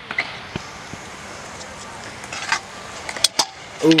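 Kick scooter's wheels rolling on a concrete skate-park bank, a steady rolling noise, with a couple of sharp clacks a little after three seconds in.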